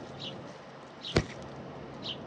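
Mourning doves feeding right at the microphone, with one sharp, brief wing flap about a second in. Short high chirps from small birds come and go around it.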